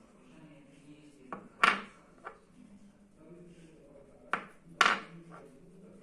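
Small metal parts clinking against each other on a workbench: two groups of three sharp clicks, the loudest about a second and a half in and again near the end.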